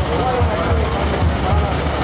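Carnival tuna procession: a crowd singing and shouting over a steady low drum beat.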